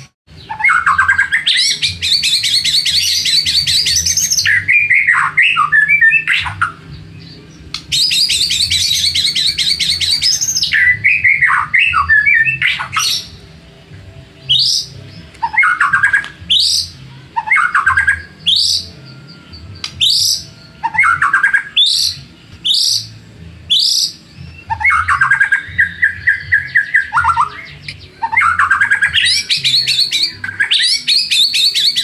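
White-rumped shama (murai batu) singing loudly in varied phrases: fast rattling trills, then a run of rising whistled notes about one a second, then steadily repeated notes near the end. It is a bait song of the kind used to rouse rival murai batu into singing back.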